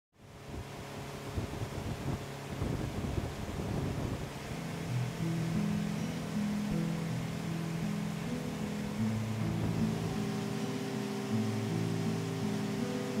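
Background music of low, held notes fades in about five seconds in and carries on, laid over a steady rushing ambient noise.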